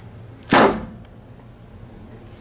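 A single quick swish about half a second in.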